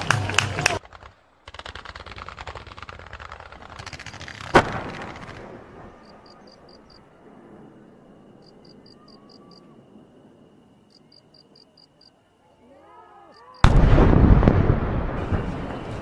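Fireworks going off: a rapid volley of crackling reports, then a crackling spell with one sharp bang about four and a half seconds in that dies away. After a quiet stretch, a loud burst comes near the end and crackles as it fades.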